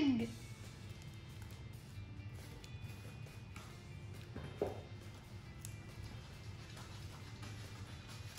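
Faint, intermittent scratching of a small plastic pick scraping and chipping at a soaked dinosaur dig-kit egg, over a low steady hum.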